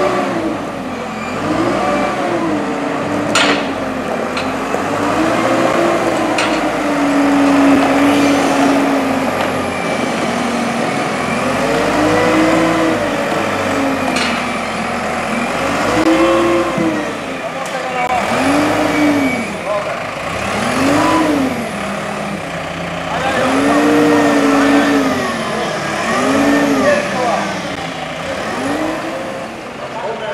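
Dieci telehandler's diesel engine revving up and down over and over as the machine works, with a couple of sharp knocks.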